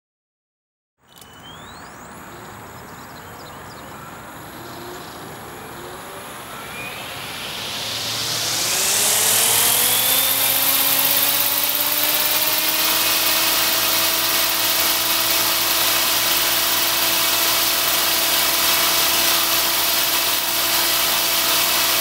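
Velos UAV unmanned helicopter spinning up. Starting about a second in, its drive and main rotor rise in pitch and loudness for roughly eight seconds, then run steadily at speed.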